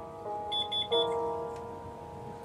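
Piano intro of a slow gospel song: sustained chords ringing, with a new chord struck about a second in. Just before that chord, a quick run of four short high beeps sounds over the piano.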